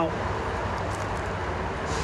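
Steady low rumble and hiss of outdoor background noise, with no distinct events.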